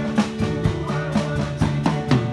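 Drum kit played with sticks in a steady beat, sharp snare and cymbal strokes over bass and guitar music.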